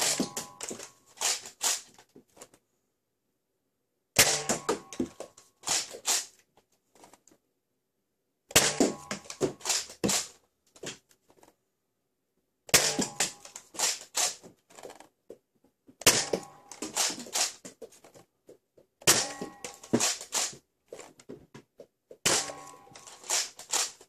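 Nerf Hyper Impulse-40 blaster firing rubber Hyper rounds one at a time through a chronograph, about every three to four seconds. Each shot is a sharp pop followed by a short run of quieter fading clicks, which fits the bouncy rubber ball rattling away.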